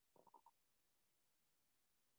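Near silence, broken near the start by four quick, faint swallowing sounds as someone drinks from a cup.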